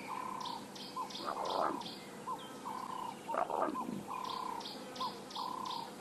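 Bush ambience: a bird repeating a held whistled note followed by a short hooked one, with runs of quick high chirps from insects or birds above it. Two louder sliding calls come about a second in and again about three and a half seconds in.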